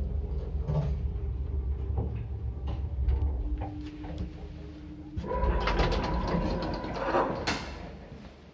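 Small passenger elevator built in 1971, rated 0.65 m/s and 350 kg, running with a low hum, then coming to a stop with a short steady tone. About five seconds in, its automatic sliding doors open with a whine and metallic rattling.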